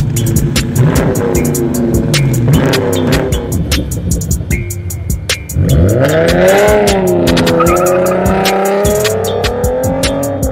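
Music with a steady beat mixed with a car engine accelerating hard. About halfway through, an engine revs up sharply and holds a high, wavering note.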